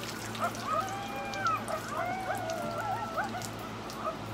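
Water dripping and trickling off a freshly hydro-dipped rifle stock into the dip tank, with scattered small drip clicks. Over it runs a loud line of high gliding tones.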